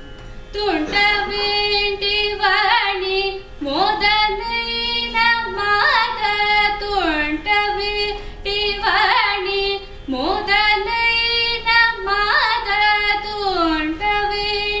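Solo female Carnatic vocalist singing ornamented phrases in raga Hamsanadam, her pitch sliding and oscillating in gamakas, in four phrases with short breaths between. A steady drone holds the tonic underneath.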